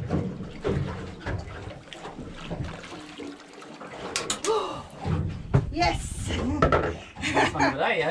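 Excited voices with a few sharp knocks as a fish is swung aboard and dropped onto the lid of a plastic cooler.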